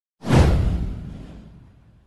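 A single whoosh sound effect with a deep low rumble, coming in suddenly just after the start, sweeping down in pitch and fading away over about a second and a half.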